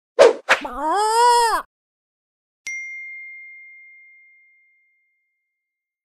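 Logo sting: a rooster crow, two short notes and then a longer note that rises and falls, followed about a second later by a single bright ding that rings out and fades over about two seconds.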